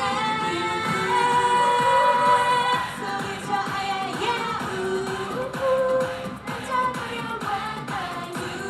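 K-pop girl group singing into handheld microphones over a loud pop backing track, with female voices carrying the melody.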